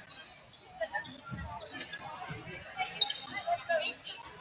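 Gymnasium ambience: a ball thumping on the hardwood floor a few times, with one sharper hit about three seconds in, short sneaker squeaks, and scattered voices of players and spectators.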